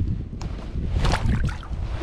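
Wind rumbling on the kayak-mounted camera's microphone, with rustling and a few short knocks and rushes as a small largemouth bass is let go over the side of the kayak.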